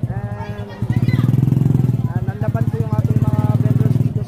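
Motorcycle-with-sidecar engine running steadily close by, getting louder about a second in, with people's voices over it.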